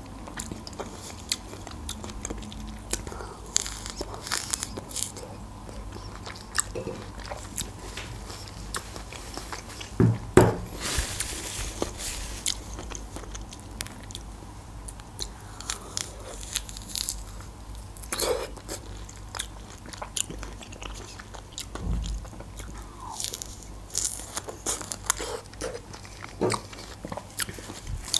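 Mouth sounds of biting into and chewing fresh orange segments: a steady run of small sharp clicks, with a louder noise about ten seconds in.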